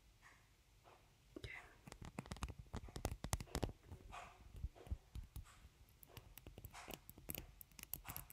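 Close-up clicks and rustles of small objects being handled near the microphone, coming in a dense cluster from about a second and a half in and again briefly near the end.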